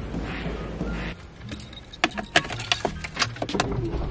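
A bunch of keys jangling at a car's centre console: a fast run of small metal clinks through the second half, after a low rustle of handling.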